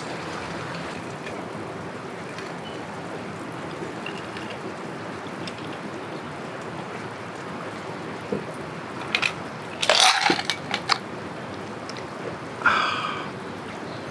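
Food sizzling steadily in a skillet on a camp burner, with a few sharp clicks and knocks of a glass being handled around the middle as a highball is drunk, and a short breathy exhale near the end.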